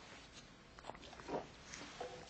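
A man taking a quick sip from a small plastic water bottle: a few soft gulping and handling sounds over a steady faint hiss, the loudest about a second and a half in.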